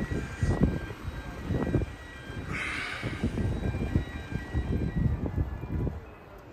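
A car pulling away over brick paving: a low, uneven rumble of engine and tyres, with a brief hiss about two and a half seconds in.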